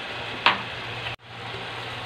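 Stir-fried pork and vegetables sizzling steadily in a nonstick pan, with a steady low hum underneath and one brief tick about half a second in; the sound cuts out suddenly for an instant a little past the middle.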